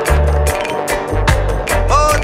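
Reggae riddim playing: a heavy bass line under steady, evenly spaced drum hits. A voice starts singing near the end.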